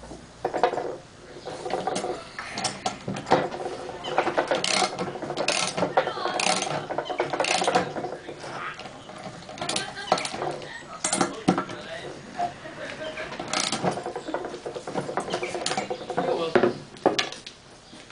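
Hand socket ratchet clicking in uneven runs of return strokes as clamp bolts are drawn down, squeezing a polyurethane-lined aluminium clamp shut.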